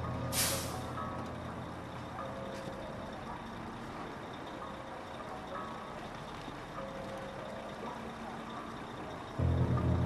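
Rear-loading garbage truck running, with a sharp air-brake hiss about half a second in. A loud low engine rumble cuts in near the end.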